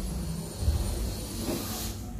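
Air rushing out of the neck of an inflated party balloon as it is let down, a steady hiss that cuts off just before the end as the balloon empties.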